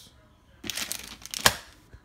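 Plastic food packaging crinkling as it is handled, with one sharp crackle about one and a half seconds in.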